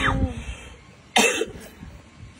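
A person's short, breathy bursts of laughter: two loud bursts about a second apart, the first trailing off with a brief falling voice.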